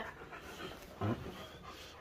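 A dog panting softly, with one short low vocal sound about a second in.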